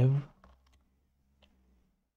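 A man's voice trails off at the start, then a few faint clicks from computer input, about half a second and a second and a half in, over a low steady hum.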